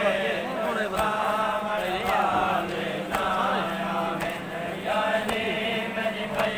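A group of men chanting a Punjabi devotional song, with a steady low hum underneath and a few sharp hits now and then.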